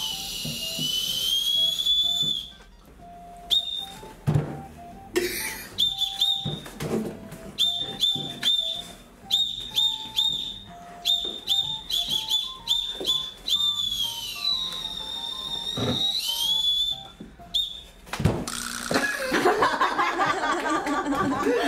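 Candy whistle (whistle-shaped ramune sweet) blown shrilly: a long held note, then runs of short toots, then longer wavering notes.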